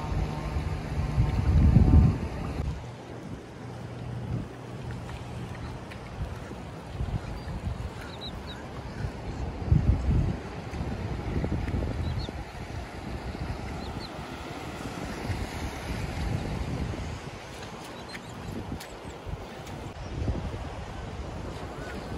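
Wind buffeting the microphone in gusts, loudest about two seconds and ten seconds in, over a steady wash of surf.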